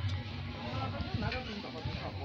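Music playing with people's voices over it.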